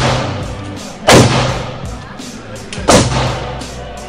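Gunshots echoing through an indoor shooting range: three sharp reports, one right at the start, one about a second in and one near three seconds, each followed by a ringing tail.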